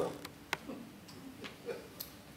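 A pause in a talk: quiet room tone broken by a few sharp, isolated clicks, the clearest about half a second in.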